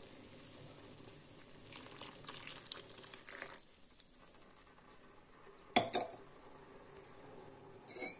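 Tea boiling quietly in a steel saucepan on a gas stove as milk is poured in, with light clinks of metal. One sharper clink of a utensil against the pan comes a little before six seconds in.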